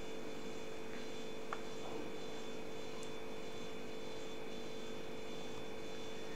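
Steady background hum with a few fixed tones under it, and one faint tick about one and a half seconds in.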